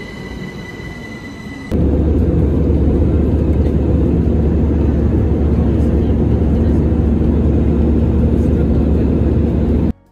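An electric train running past with a steady high whine. At a cut about two seconds in, this gives way to the loud, steady drone of an Airbus A320-family jet airliner in flight, heard inside the cabin at a window seat over the wing.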